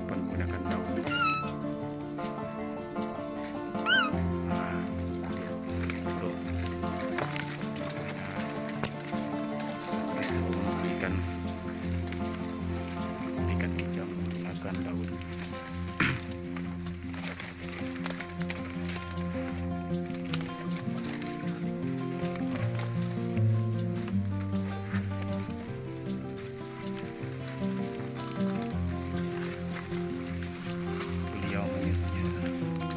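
Two short, loud pitched calls about one and four seconds in, blown on a rolled pitcher-plant (kantung semar) leaf as a lure imitating a barking deer, over steady background music.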